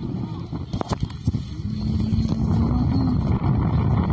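Wind buffeting the microphone, a dense low rumble that grows louder about a second and a half in.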